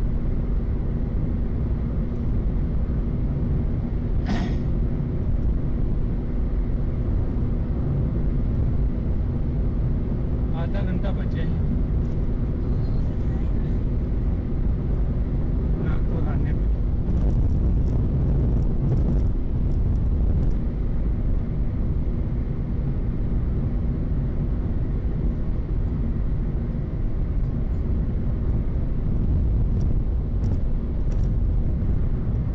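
Steady road and engine noise inside a car's cabin cruising at highway speed, with a few brief higher-pitched sounds about four, eleven and sixteen seconds in.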